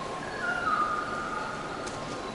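A bird's whistled call: a held note that steps down in pitch twice over about a second and a half, above a steady background hiss.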